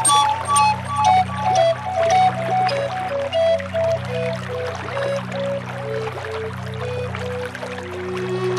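Native American flute playing a slow melody of short held notes that step gradually downward, over a steady low drone.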